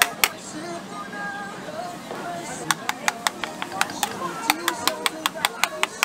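A metal spoon rapidly clicking against the edge of a metal plate as it scrapes off strips of batter into a pot of boiling water, about four to five sharp clicks a second, starting after about two and a half seconds.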